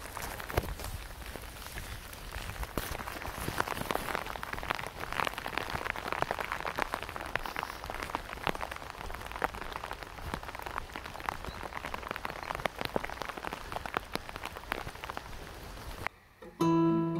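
Rain falling on a jacket hood, recorded on a mobile phone held underneath it: a steady hiss with many sharp, irregular taps of drops striking the hood.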